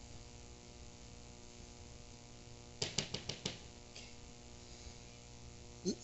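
Steady, low electrical mains hum. About halfway through, a brief cluster of five or six quick, sharp sounds stands out above it.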